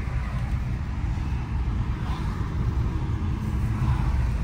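Maruti Suzuki Brezza driving along, heard from inside the cabin: a steady low rumble of engine and tyre noise.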